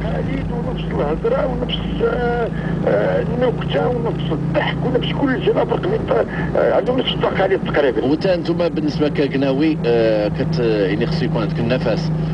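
Voices talking, at times almost singing, over the steady low hum of a car driving, heard from inside the cabin.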